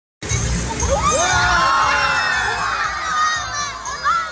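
A group of children shouting and cheering together, many high voices overlapping, loudest in the first half and easing off toward the end.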